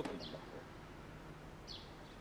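Quiet outdoor background with two faint, brief bird chirps, one near the start and one near the end.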